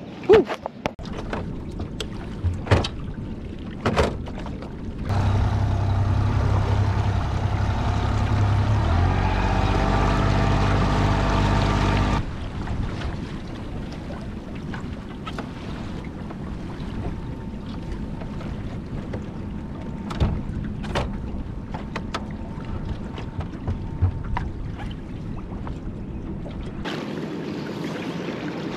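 A boat's outboard motor runs loudly for about seven seconds, rising in pitch as it speeds up, then stops abruptly. Before and after it there is a quieter wash of water and wind around the hull, with scattered knocks from gear on the deck.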